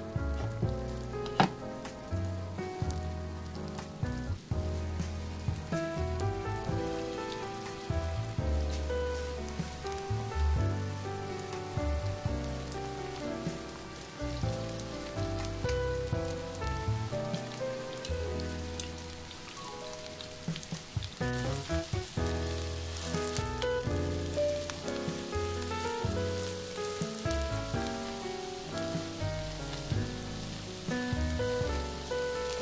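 Potato hotteok frying in vegetable oil in a pan, with a steady sizzle and crackle. Background music with sustained notes and a bass line plays over it.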